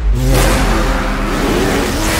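Loud film-teaser sound design: a dense, noisy swell over a deep bass rumble, with an engine-like revving character.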